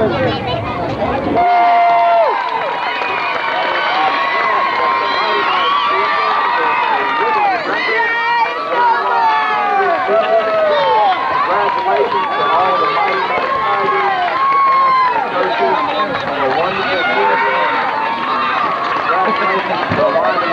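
Crowd of many young players' voices chattering and shouting over one another on a football sideline, with a 'woo!' at the very end.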